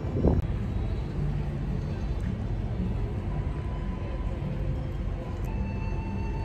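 Steady outdoor background noise with a low rumble, with faint steady tones joining about halfway through.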